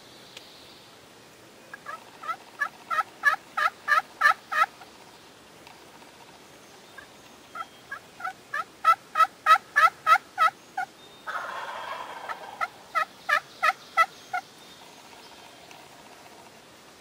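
Turkey yelping: three runs of evenly spaced two-note yelps, about three to four a second, the first run growing louder as it goes. A short scratchy noise comes just before the last run.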